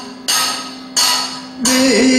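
Three ringing bell-metal percussion strikes of Kathakali accompaniment, about two-thirds of a second apart, each fading away over a steady held drone note. Singing comes in near the end.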